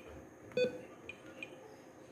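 A short electronic beep about half a second in, followed by a few faint high ticks.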